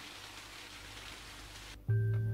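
Steady hiss of running water from a small stream trickling over rocks. Near the end, background music with a low held note comes in.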